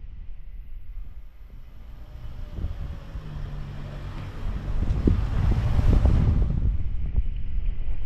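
A motor vehicle passing close by on the street, its noise swelling from a few seconds in, loudest around the middle and falling away after, over wind buffeting the microphone.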